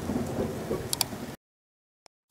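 The fading tail of a rumbling, crackling intro sound effect, with two sharp clicks about a second in, cutting off abruptly partway through.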